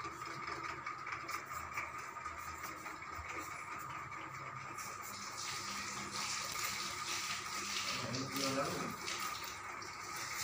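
Indistinct voices in a small room over a steady hiss and a faint steady high tone; the hiss grows stronger about halfway through, and a short pitched sound comes near the end.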